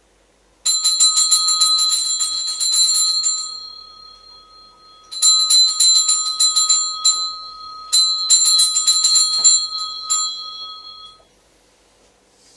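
Altar bell (Sanctus bell) shaken in three rapid ringing bursts, the second shorter than the other two, marking the consecration and elevation of the host at Mass.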